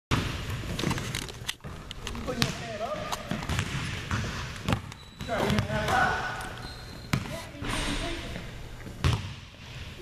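A basketball being dribbled on a hardwood gym floor: a run of irregular sharp bounces, with voices talking in the background.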